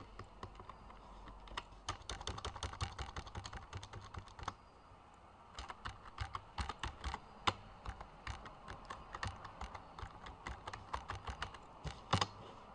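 Typing on a computer keyboard: quick runs of key presses, with a lull of about a second a little before the middle.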